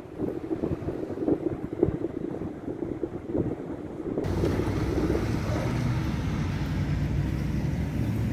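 Wind gusting over the microphone, irregular and rumbling, for about four seconds; then an abrupt change to the steady hum of a car driving in the rain, heard from inside the cabin.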